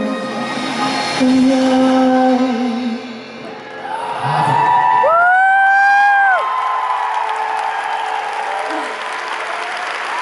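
Live pop concert in a large hall: a male singer's last held notes with the band, then the crowd cheering and applauding as the song ends. A loud held high note rises and falls about five seconds in.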